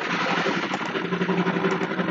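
An engine running steadily with a low hum, loud against the room.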